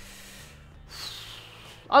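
A man breathing audibly during a thinking pause: a faint breath at the start, then a longer, louder breath from about a second in, just before he starts speaking again.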